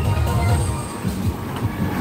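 Loud night-fair din: bass-heavy music from loudspeakers over a low, continuous rumble of crowd and fairground noise.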